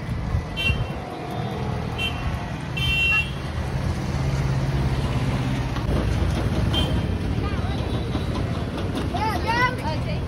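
Street traffic noise with a steady low rumble and several short vehicle-horn toots in the first three seconds, and voices around.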